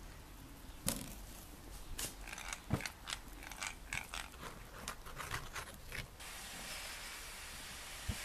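Hand-cranked eggbeater drill with a spade bit boring into a raw potato: irregular clicks and scraping from the gears and the cutting bit. About six seconds in this gives way to a steady faint hiss.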